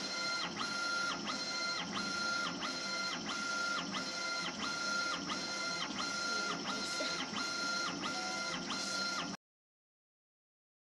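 Laser engraving machine raster-engraving marble: the gantry's drive motors whine up and down in pitch about twice a second as the laser head sweeps back and forth, each pass starting and stopping evenly, over a steady hiss. The sound cuts off suddenly near the end.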